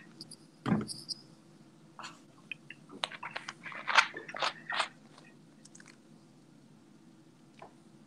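Small wet mouth noises and light clicks as bourbon is tasted from a glass: lip smacks and a sip close to the microphone, clustered a couple of seconds in, with a soft bump about a second in.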